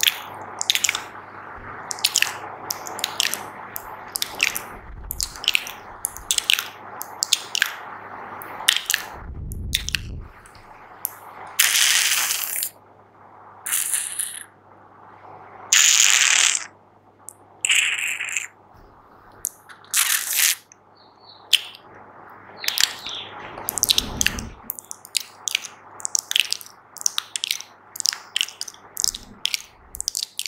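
Fast, wet ASMR mouth sounds made close to the microphone: rapid clicks and pops, with a few longer hissing bursts in the middle.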